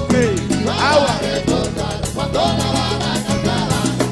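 Cuban timba band playing live: congas, drums and bass under keyboard and horn lines that swoop up and down.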